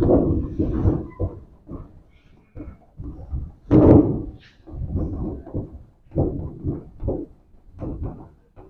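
Chalk writing on a blackboard: a run of irregular taps and scratches as the letters go on, with a louder stroke about four seconds in.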